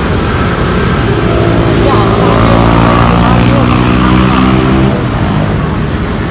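A motor vehicle engine runs with a steady, even hum close by, swelling for about four seconds from a second in and then fading, amid street traffic noise.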